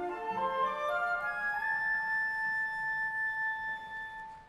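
Orchestral music: a quick rising run of notes, led by woodwinds, climbing to one long held high note that fades near the end.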